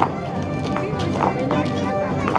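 Folk dance music with held melodic notes, over sharp taps at an irregular quick pace from the dancers' shoes stepping on the stone paving.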